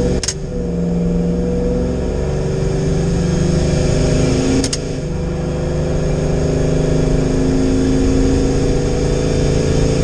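Ram pickup's TorqStorm-supercharged stock 5.7 Hemi V8 running under light throttle on the road, heard inside the cab. The engine is still cold and being warmed up. Its note shifts twice, each time with a brief sharp click: about a third of a second in and again around the middle.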